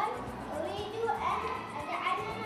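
Indistinct children's voices in a classroom: a low murmur of schoolboys, with no single clear speaker.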